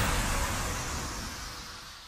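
The tail of an electronic intro track dying away: a broad, hissy swell that fades steadily, with only a faint held tone left of the music.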